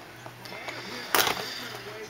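A short crackling rustle a little over a second in, from a hand handling a trading-card pack, over quiet room sound with faint voices.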